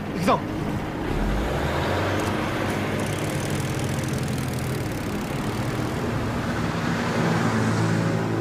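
A military truck's engine running with steady road-vehicle noise as it stands at a checkpoint. A short, sharp falling squeal comes just after the start.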